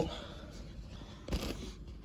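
Faint handling noise as a hand-held phone camera is moved, with one short rustle about one and a half seconds in.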